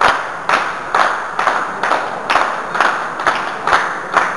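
Hands clapping in a steady rhythm, about two claps a second, each clap followed by a short echo.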